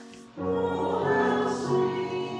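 Choir singing sacred music in held notes; one phrase fades away and the next begins about half a second in.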